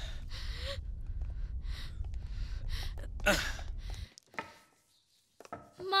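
Film earthquake sound effect: a deep, steady rumble with irregular crackling and crashing noises over it. A loud cry falling in pitch comes about three seconds in, and the rumble cuts off suddenly at about four seconds.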